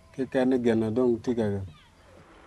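A man's voice speaking one short sentence in a language other than English, in a few quick phrases that end shortly before the close.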